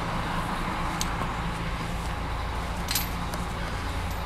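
Steady outdoor background noise with a low hum, broken by two faint, sharp clicks about a second in and near three seconds.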